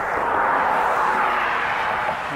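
Rushing noise of a passing vehicle that swells up just before and holds steady.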